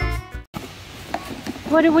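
Background music with a steady bass beat that cuts off abruptly about half a second in, leaving quiet outdoor ambience with a faint click before a woman's voice begins near the end.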